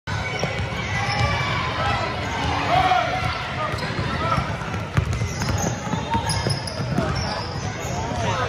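Basketball bouncing on a hardwood gym floor, with many spectators' voices echoing around the hall.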